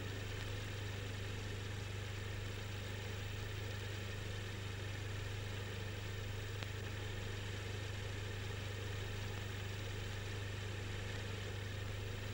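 Steady low mechanical hum of a film projector running, with no change in pitch or level.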